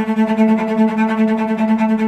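Cello played with the sautillé bow stroke: one note repeated in fast, even bow strokes that spring from the string. The strokes start at once and stop after about two seconds.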